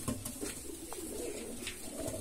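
Indian fantail pigeons cooing quietly.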